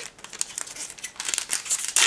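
Foil booster-pack wrapper crinkling as it is handled and torn open by hand: a dense, rapid run of small crackles.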